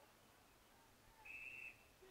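Umpire's whistle: one short, faint blast of about half a second, a little over a second in.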